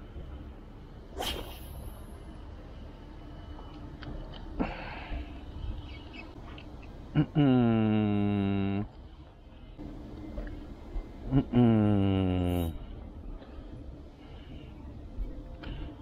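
Spinning fishing reel whirring twice, about four seconds apart. Each whir starts with a sharp click and slides down in pitch before holding a steady buzzing tone for about a second.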